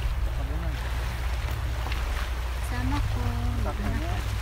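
A woman talking in short phrases over a steady low rumble that runs throughout, the kind wind makes on a microphone outdoors.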